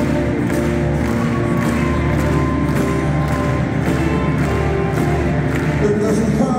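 Live rock band playing an instrumental passage, heard from the audience in a stadium: electric guitar and sustained chords over a steady drum beat, with no singing.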